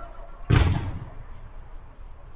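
A single loud thump about half a second in, dying away over about half a second in the covered hall: a football being struck hard during a five-a-side game.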